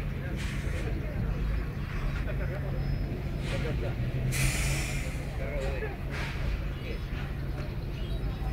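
Indistinct voices of people talking at a distance over a steady low hum, with a brief rush of noise about four and a half seconds in.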